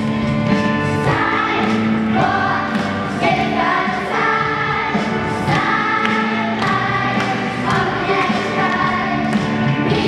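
Children's gospel choir singing, with long held notes.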